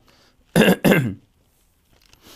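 A man clearing his throat twice in quick succession, two short rough bursts about a third of a second apart.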